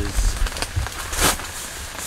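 Crackly rustling of nylon tent fabric and low thumps of movement inside a tent, with a brief louder rustle a little past halfway.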